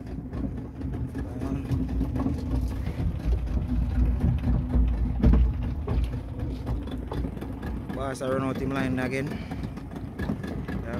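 Outboard motor of an open fishing boat running steadily at sea, a low drone, with wind buffeting the microphone loudest about halfway through. A man's voice comes in briefly near the end.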